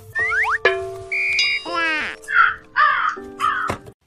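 Crow cawing three times, about half a second apart. Before the caws come a few steady tones and sliding pitches.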